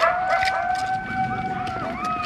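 Wolf howling: one long, steady held note that sags slightly at its end. A second howl at a higher pitch joins near the end, with short rising-and-falling yelping calls over both.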